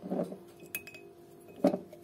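Light clinks and taps of fingers against a small glass jar as sugar substitute is picked out of it, with one small ringing tick and a louder knock near the end, over a faint steady hum.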